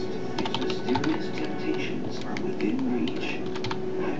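Computer keyboard typing: quick key clicks in several short bursts, with music playing underneath.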